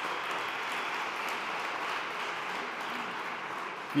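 A large audience applauding steadily, the clapping filling the hall evenly without a break.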